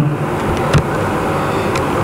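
Steady background noise without speech, with a faint click about three-quarters of a second in.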